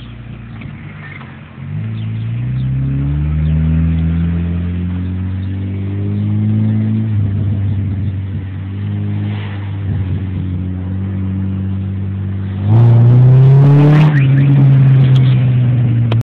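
Car engine and exhaust accelerating, heard from inside the cabin. The pitch rises steadily for about five seconds, drops at a gear change and holds. Near the end it jumps suddenly louder under hard throttle and rises again.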